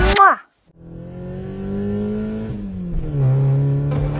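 Sound-effect car engine running, coming in about a second in after a short silence; its note climbs slowly, then drops in pitch twice near the end.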